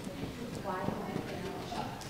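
Footsteps of a child walking across the front of a hall, a few knocking steps, with faint voices of people talking quietly.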